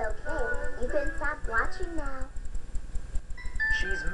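Cartoon trailer soundtrack played through a television speaker: a character's voice with music for about two seconds, then held musical notes near the end, over a low hum.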